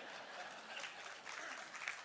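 Faint audience applause from a large crowd, a steady patter of many hands clapping.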